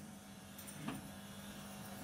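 Faint room tone with a steady low hum and one faint click about a second in.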